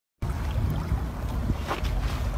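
Low, steady rumble of wind buffeting the microphone.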